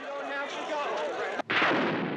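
Several voices overlapping, then a sudden cut about one and a half seconds in to a loud blast of battlefield gunfire that rings out and fades.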